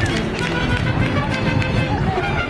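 Mariachi ensemble playing: bowed violins and trumpets over strummed guitars and a guitarrón bass.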